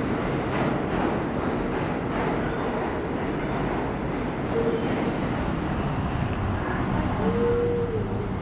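New York subway station noise: a train running with a steady rumble and rattle, with two short whining tones in the second half.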